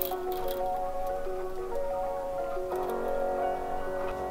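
Background music of soft, held notes, moving to a new chord about two-thirds of the way through.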